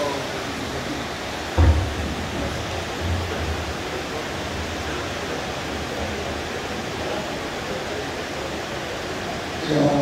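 Steady hiss of room noise in a large hall, with one short low thump about one and a half seconds in. A voice starts near the end.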